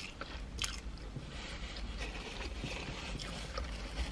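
Someone chewing a mouthful of salad and rice from a burrito bowl, with small wet mouth clicks, quiet over a low steady rumble.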